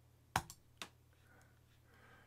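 Computer mouse clicking: one sharp click about a third of a second in, a fainter click just after it, and another faint click near the middle.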